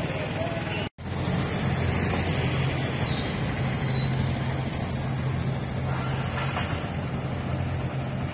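Street traffic sound: a steady low engine hum from road vehicles, broken by a brief cut to silence about a second in.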